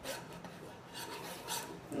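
Faint plastic rasping and rubbing in a few soft scrapes as the cap of a small plastic glitter tube is twisted back and forth; the cap is not a screw-on, so twisting only grinds it against the tube.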